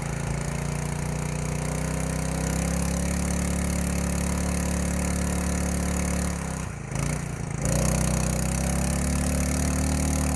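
Small petrol engine of a 3 hp portable water pump running after warm-up. Its speed climbs over the first few seconds as it is brought up towards full throttle with the choke off. About six and a half seconds in the revs sag briefly, then pick back up and run steadily at a higher speed.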